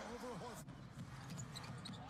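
A faint voice over low background noise.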